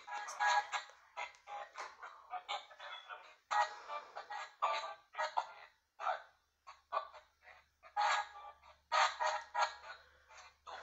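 Spirit box app sweeping, putting out a choppy string of short clipped fragments of voice- and music-like sound, each cut off abruptly with brief silences between.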